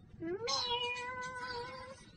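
A woman's voice imitating a cat: one drawn-out "meow" that rises at the start and is then held on one pitch for over a second.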